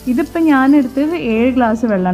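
A woman's voice singing a melody with long held notes, as in a vocal background music track.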